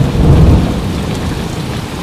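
Heavy rain falling steadily, with a deep rolling rumble of thunder underneath.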